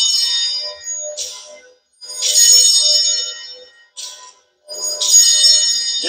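Altar bells (a cluster of small Sanctus bells) rung at the elevation of the consecrated Host. The pattern is a short shake followed by a longer ring, repeated about every three seconds, each ring dying away before the next.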